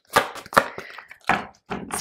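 Tarot cards being shuffled and worked in the hands to pull a card out of the deck: three sharp card clicks within about a second and a half, with soft card rustle between.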